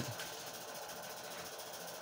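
Faint, steady background hiss in a pause between spoken phrases, with no distinct sound event.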